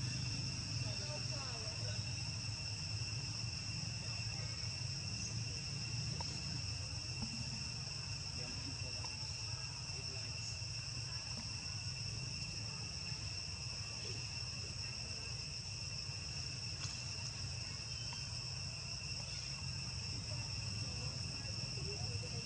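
Steady high-pitched insect drone held at two even tones, over a low steady rumble.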